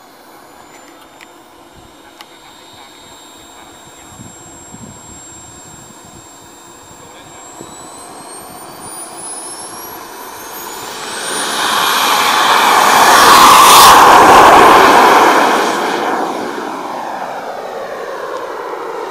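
Radio-controlled model jet's engine whining steadily at low power, then rising in pitch as it is throttled up for takeoff. A loud rushing jet noise builds, peaks as the model rolls down the runway and lifts off, then fades as it climbs away.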